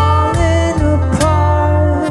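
Live acoustic band music: a male voice sings held, gliding notes over acoustic guitar and a steady electric bass line, with a few sharp strikes.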